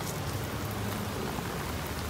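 Steady hiss of light rain falling around the microphone, with a low steady hum underneath.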